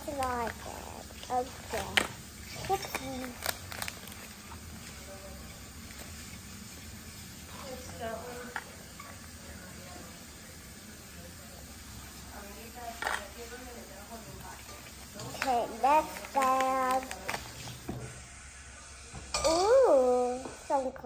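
A child's short vocal sounds, a few times, with the crinkle of a foil-lined paper packet being torn open and small plastic pieces clicking on a hard countertop.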